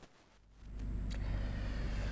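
A moment of silence, then a low steady background hum sets in about half a second in, with a faint click or two: room tone before a voice begins.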